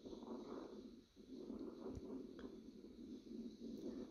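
Near silence: faint low background noise, dropping out briefly about a second in.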